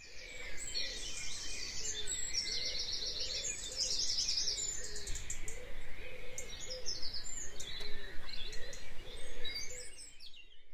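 Birds chirping and singing, several calls overlapping, with a fast trill a few seconds in.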